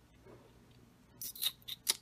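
Paperback book handled, giving a few short, crisp paper rustles and clicks in quick succession after about a second of quiet.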